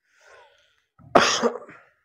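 A man coughs once, a short sudden burst about a second in, after a faint breath.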